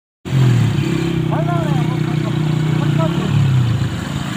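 Small motorcycle engine running steadily, its note dropping briefly a little after three seconds, with voices calling out over it.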